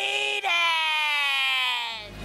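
SpongeBob SquarePants' cartoon voice in one long, high-pitched scream that slowly falls in pitch, with a brief break about half a second in.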